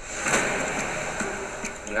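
A steady rushing noise from the film trailer's soundtrack; it swells up over the first half second, then holds.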